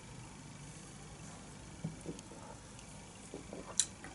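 A man sipping and swallowing beer from a glass, faint, with a few small wet clicks about halfway through and a sharper one just before the end.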